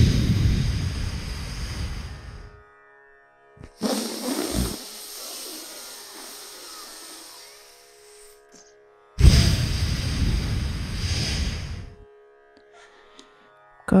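Slow breathing through one nostril close to the microphone during chandra bhedana pranayama: a long exhale through the right nostril, a quieter, hissier inhale through the left, then another long exhale near the end. Soft background music with a held drone runs underneath.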